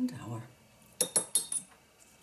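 Watercolour painting gear being handled: four quick, light clinks with a short ring about a second in, after a brief low murmur of a voice at the start.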